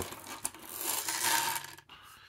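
Friction motor of a toy bus whirring as the spun-up flywheel drives it across a wooden tabletop, dying away and stopping near the end.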